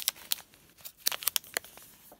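Plastic wrapper of a Topps baseball card jumbo pack crinkling in the hands as it is opened. There is a burst of sharp crackles at the start and another cluster about a second in.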